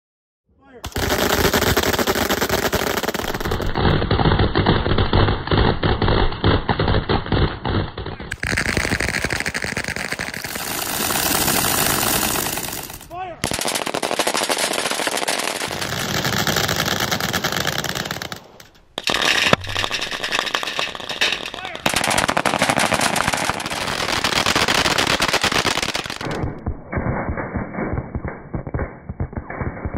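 Several machine guns firing tracer rounds together in long, continuous full-auto bursts. The fire starts about a second in, with two short breaks, one about halfway and one about two-thirds through.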